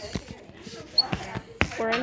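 A few sharp knocks and bumps, about four across two seconds, from a handheld phone being handled and swung around, with a voice coming in near the end.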